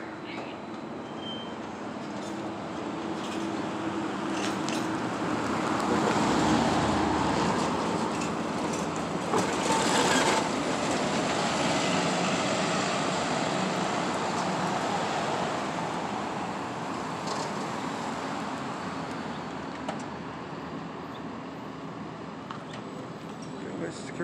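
City bus driving past close by: engine and road noise that build over several seconds, peak in the middle with a brief hiss about ten seconds in, then slowly fade away.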